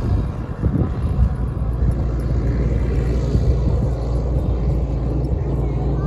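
Farm tractor engine running steadily as it tows a hay-ride wagon, a continuous low drone under outdoor noise.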